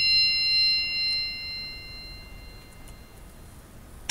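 A 'bing' chime sound effect, a bell-like ring of several tones at once, already sounding and fading away over about three seconds. It is the quiz's cue to pause the video and write down an answer.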